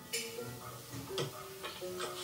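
Cartoon sound effect of a hammer tapping nails into denim: a few sharp ticking taps, the clearest about a second in, over soft background music, recorded off a TV speaker.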